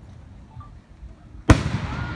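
An aerial fireworks shell bursting overhead: one loud, sharp boom about one and a half seconds in, rumbling and echoing away after it, over a low rumble of the display.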